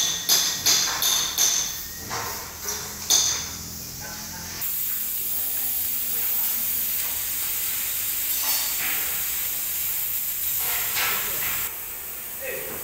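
A hammer striking a steel mould frame, about eight sharp ringing blows in quick succession over the first three and a half seconds. A steady hiss then takes over until just before the end.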